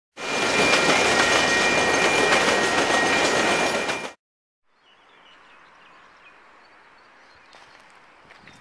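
A train running past close by: a loud rush of wheel and rail noise with a steady high squeal and faint rail clicks. It cuts off suddenly about four seconds in, and faint outdoor background follows.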